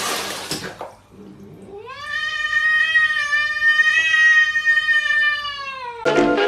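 Water splashing in a plastic basin for about a second, then a domestic cat gives one long meow lasting about four seconds, rising in pitch as it starts and falling away at the end.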